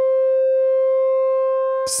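Sustained modular-synth note: a pulse wave from an oscillator whose pulse width is modulated by the Bastl Neo Trinity, holding one steady pitch with a full row of overtones. It sounds without dropping out, the sign that the modulation is now unipolar and no longer pushes the pulse width into negative voltage.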